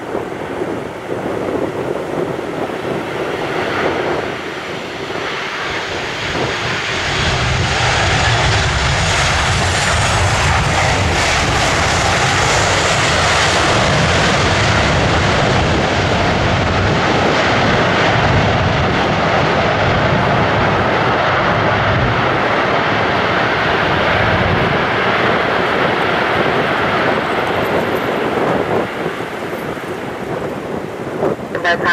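WestJet Boeing 737 jet engines during landing and roll-out. The engine noise swells about seven seconds in, with a rising whine, stays loud as the jet rolls down the runway, and eases off near the end.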